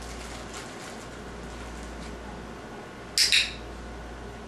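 A training clicker clicked about three seconds in: a sharp, loud double click, press and release, marking the puppy's behaviour for a food reward. A low steady hum runs under it.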